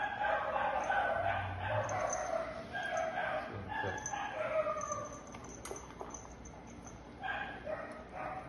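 Dog whining in long, drawn-out tones for the first five seconds or so, then fainter. A single sharp click comes a little past the middle.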